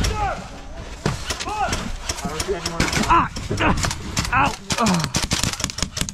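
Airsoft guns firing as a string of sharp clicks and short bursts, with people shouting over them.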